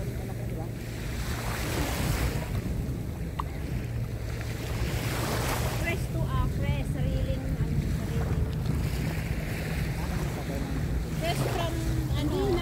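Small sea waves washing up onto a sandy beach, swelling in surges every few seconds over a steady low rumble, with wind buffeting the microphone.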